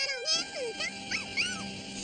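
A small animated creature's cries: a few short calls that bend up and down in pitch, over background music.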